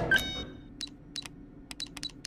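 An ID card reader gives one electronic beep as a badge is held to it, followed by a run of short, irregular keypad beeps, about six of them.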